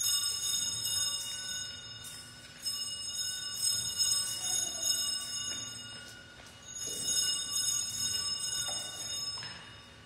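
Sanctus bells rung three times, each peal shimmering with high tones and dying away over a few seconds. They mark the elevation of the consecrated host after the words of institution.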